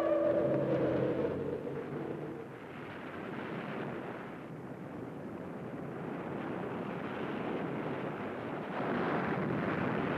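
A film score's held notes fade out over the first couple of seconds. Then comes a steady wash of ocean surf breaking on a sandy beach, swelling a little near the end.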